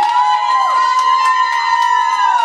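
A long, high-pitched vocal whoop held on one steady pitch for about three seconds, sliding up at the start and dropping away at the end, over a few fainter voices in a hall.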